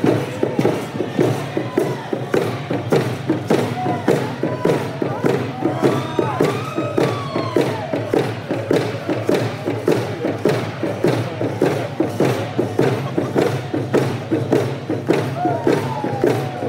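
Hand drums beaten in a fast, steady beat, about three strokes a second, under a group of voices singing a hand game (stick game) song.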